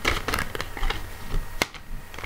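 Tarot cards being handled on a cloth-covered table: a string of light, irregular clicks and flicks as cards are picked up and moved, with one sharper click well into the second half.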